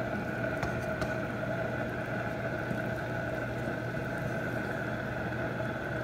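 Steady machine hum with a few fixed tones from a running kitchen appliance, with a couple of faint knocks of a wooden spoon against the pot about a second in.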